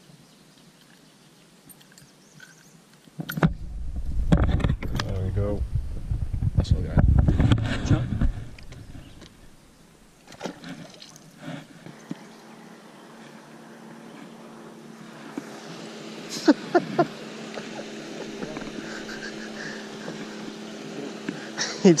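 A distant boat motor humming steadily and slowly growing louder through the second half, with a few sharp clicks partway through. Earlier, several seconds of low rumbling handling or wind noise on the camera.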